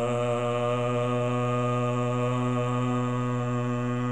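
A man's voice chanting, holding one long syllable on a steady low pitch.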